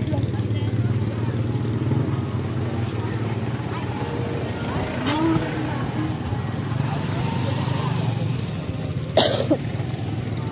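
A vehicle engine running steadily with a low hum, with voices in the background and a cough about nine seconds in.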